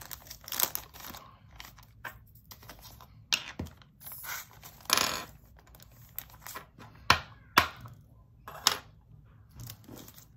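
Small plastic bag of square resin diamond-painting drills crinkling as it is handled, with the drills rattling and several sharp plastic clicks, most of them in the second half.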